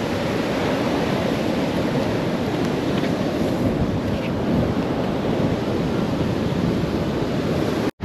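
Rough surf breaking and washing up the beach, a steady rushing with wind buffeting the microphone, broken by a brief gap just before the end.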